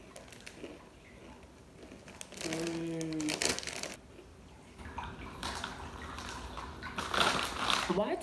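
Plastic sweets bag crinkling and rustling in bursts as a hand rummages in it, with a short hummed voice sound about two and a half seconds in.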